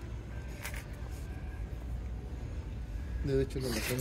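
Shopping cart rolling across a store floor, a low steady rumble with a few faint clicks. A man's voice starts near the end.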